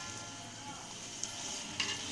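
Chicken pieces being stir-fried in tomato masala in a clay pot: a soft sizzle under a spoon stirring through the pot, with two brief scrapes or knocks in the second half.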